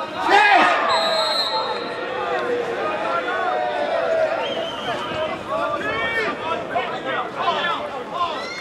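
Players' voices shouting and calling across a football pitch, overlapping and not clearly worded. About a second in, the referee's whistle gives a short, high blast.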